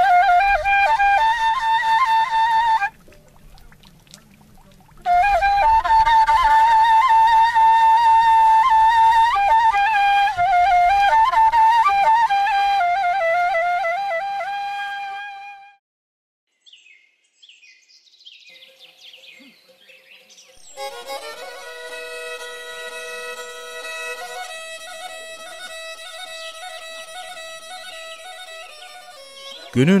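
A kaval, the long end-blown shepherd's flute, playing a slow, plaintive melody. It stops briefly about 3 s in, resumes, and fades out about halfway through. After a near-quiet gap, a softer background music of held notes comes in for the last third.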